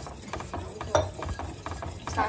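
A wire whisk beating white sauce in a stainless steel pan, its wires clicking and scraping rapidly against the metal sides and bottom.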